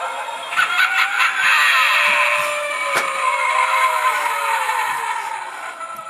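Tinny recorded spooky sound effect played by a Gemmy Halloween animatronic prop, with long, slowly wavering tones over a hiss; it grows louder about half a second in and fades near the end.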